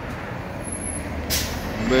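Street traffic: a steady low vehicle rumble, with a short hiss about a second and a half in. A man's voice starts again near the end.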